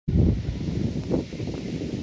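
Wind buffeting the microphone: a loud, low, rumbling noise that starts abruptly, with a brief stronger gust about a second in.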